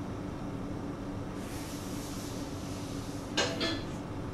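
A steady low electrical hum with a soft hiss that comes in about a second in and fades about two seconds later. A brief voice sound follows near the end.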